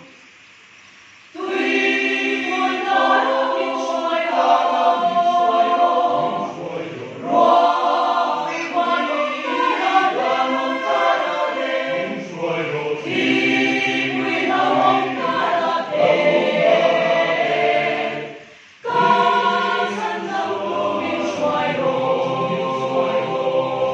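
Mixed church choir of men's and women's voices singing a song together. The choir breaks off for about a second at the start and again briefly near the end, each time coming back in together.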